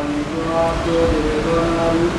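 A group of voices chanting a line of a Sanskrit verse together in held, stepped pitches, repeating it after the leader in call-and-response.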